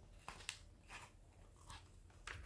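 Faint rustle of a paper book page being turned by hand, with a few soft brushing strokes as it settles flat.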